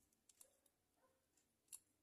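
Near silence, with a few faint ticks from a small die-cast toy fire truck and a cleaning brush being handled, one about half a second in and a slightly louder one near the end.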